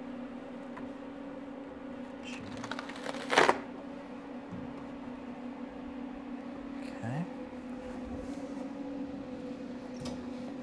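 Steady electrical hum from the photopolymer processing equipment. About three and a half seconds in there is one short, sharp crackle as the thin plastic-backed photopolymer sheet is peeled off the platen's mat and flexed.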